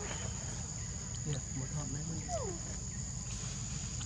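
Insects droning steadily at a high pitch, with a few short falling calls about a second and two seconds in, over a low rumble.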